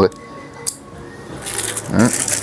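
Clear plastic bag crinkling as hands handle a pair of wrapped reading glasses, starting about one and a half seconds in and growing louder, after a single soft click.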